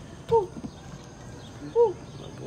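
A man's voice giving two short 'woo' shouts, each rising and then falling in pitch, about a second and a half apart.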